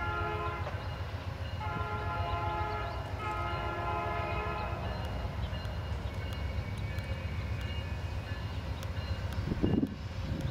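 A locomotive's multi-chime horn, from the lead GE P42, sounds three blasts in the first five seconds: a short one, then two longer ones. A steady low rumble from the moving locomotives runs under it, with a brief thump near the end.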